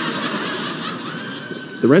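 Audience laughter: many people laughing together, a steady mixed wash of voices.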